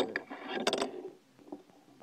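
A fingerboard clicking and clacking on a hard tabletop as it is set down and handled: a few sharp clicks at the start, and a louder quick cluster of clicks just under a second in.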